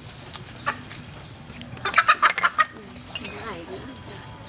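Live hen clucking: a quick run of about seven loud clucks in the middle, with fainter clucks around it.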